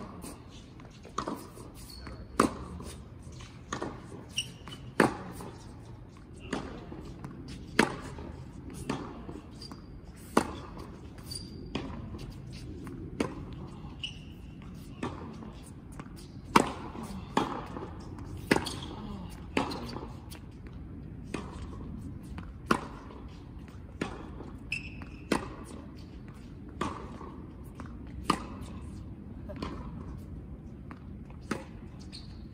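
Tennis rally on an indoor hard court: rackets, among them the Wilson Serena Williams Blade 102 being tested, strike the ball, and the ball bounces on the court, a sharp knock roughly every second, echoing in the hall.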